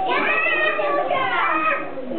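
A group of young children's voices chattering and calling out over one another while playing.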